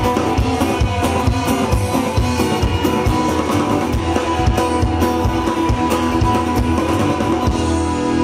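Live red dirt rock band playing an instrumental passage, with electric and acoustic guitars, bass and drum kit on a steady beat.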